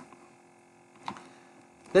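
Quiet room tone with a faint steady electrical hum and a single short click about halfway through. A man's voice starts speaking right at the end.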